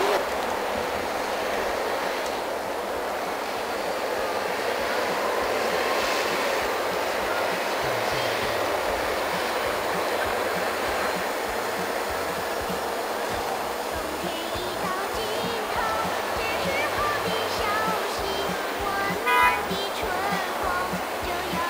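A steady rushing noise, with faint music beneath it and faint wavering voice-like tones coming in near the end.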